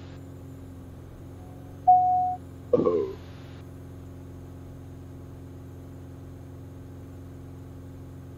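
Steady low drone of the Cirrus SR20's engine and propeller heard in the cockpit. About two seconds in comes a single loud electronic beep lasting about half a second, and a brief voice sound follows just after.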